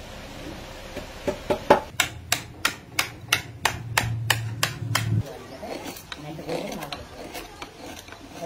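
A hand tool knocking on the wooden guitar neck in sharp, even strikes, about three a second, for about four seconds; then softer scraping as wood is shaved from the neck by hand.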